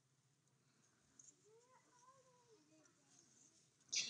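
Near silence, with a faint, high voice, likely a young child's, that rises and falls briefly from about a second in.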